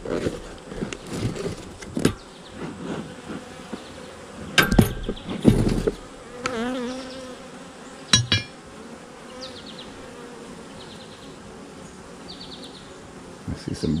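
Honey bees buzzing steadily around an open hive, from a colony that is getting a little jumpy. A few knocks and thumps of handling come about a third of the way in, and a louder wavering buzz swells briefly about halfway through.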